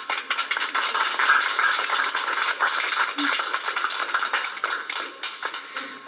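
Audience applauding, starting abruptly and thinning out near the end.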